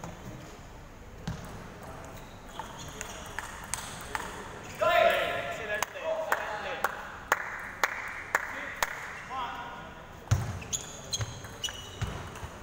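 A table tennis ball clicking as it bounces, a run of sharp single ticks that settles to about two a second in the middle of the stretch, with voices in a large hall and a loud call about five seconds in.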